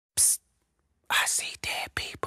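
A man's whispered voice: a short hiss near the start, a pause, then a few whispered words from about a second in.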